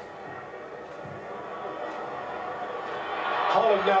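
A man speaking, with a low background murmur that slowly grows louder before his voice comes in near the end.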